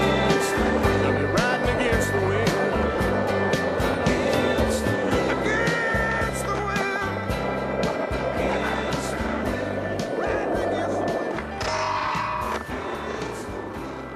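Music soundtrack over skateboard wheels rolling on pavement and the clack of the board, fading out near the end.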